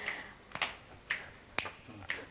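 Four light finger snaps keep time at about two a second in a gap in unaccompanied singing.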